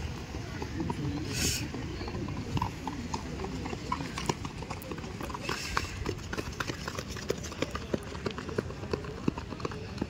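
Quick, irregular running footfalls on a dirt track, which become clear and dense from about four seconds in as runners pass close by. Voices are heard underneath.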